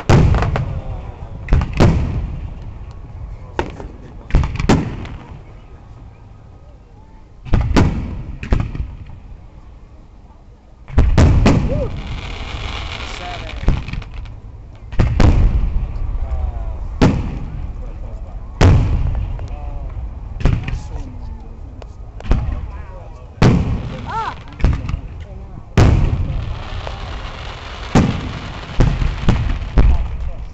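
Aerial firework shells bursting one after another, a sharp boom every second or two with a rolling echo after each. A longer hiss follows two of the bursts.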